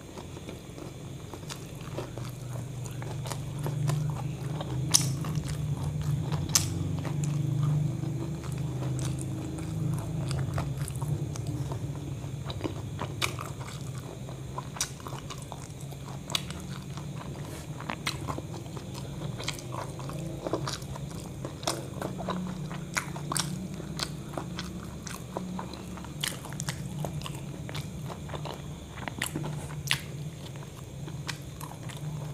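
Close-miked chewing and biting of a crispy KFC burger, with irregular crunches and sharp wet mouth clicks running throughout.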